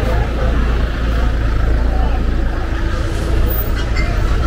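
A motor vehicle running close by on a street, a steady low rumble, under the chatter of people talking.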